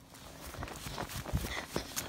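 Footsteps of a person running over grass: soft, irregular thuds with rustling.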